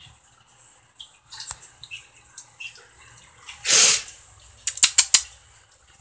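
Small drips and faint scuffles from wet baby raccoons on a tiled floor, then a short loud hissing burst a little before the middle and a quick run of sharp clicks just after it.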